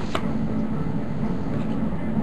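Steady low background rumble and hum, with one faint click just after the start.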